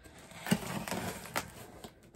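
A knife blade cutting through the packing tape along a cardboard box's seam: a scratchy rasp broken by a few sharp clicks, the loudest about half a second in.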